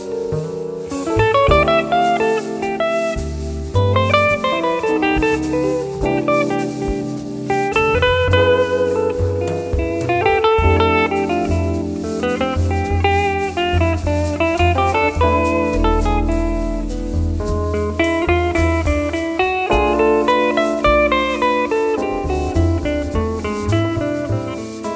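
Live jazz quartet playing: electric guitar playing quick melodic runs that rise and fall, over walking double bass, drums and piano.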